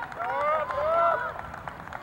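Several voices shouting and calling out over one another on a soccer field, loudest in the first second.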